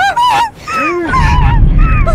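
A street explosion, a fireball going up, with a heavy low rumble that swells about halfway through. High, wavering, gliding honk-like cries sound over it.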